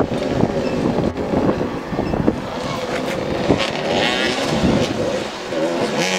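Several motoball motorcycles' engines running together, revving up and down as the riders chase the ball, with overlapping engine notes rising and falling.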